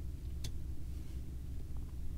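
Steady low hum with one faint click about half a second in: a small diecast toy car being set down on a tabletop.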